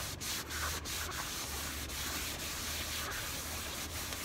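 Baby wipe rubbed back and forth over a white synthetic (vegan) leather car seat with moderate pressure: a steady rubbing hiss.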